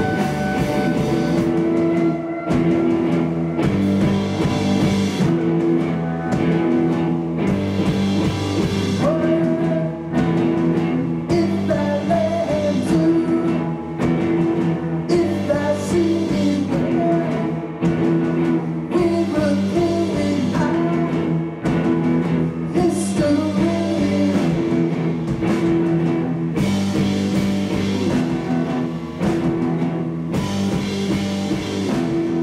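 Live rock band playing a song: electric guitar, bass guitar, violin and drum kit, with a singer coming in partway through.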